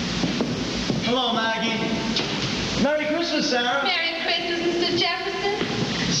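Actors' voices on stage, indistinct, starting about a second in.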